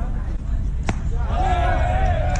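A single sharp pop about a second in, a pitched baseball hitting the catcher's mitt, followed by a raised voice. Wind rumbles on the microphone throughout.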